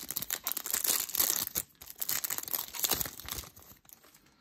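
Foil wrapper of a Yu-Gi-Oh! booster pack being torn open and crumpled by hand: a dense, crackly crinkling and tearing that comes in two spells and eases off near the end.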